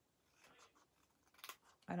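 Small craft scissors snipping into thin patterned paper, cutting a short slit at a score line. One sharp snip about one and a half seconds in, with a fainter sound of the blades and paper before it.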